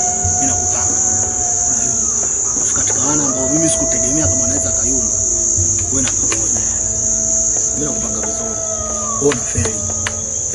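Crickets chirping in a steady, continuous high-pitched trill.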